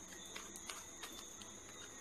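Faint, irregular soft ticks of a deck of playing cards being shuffled by hand, over a low steady hiss.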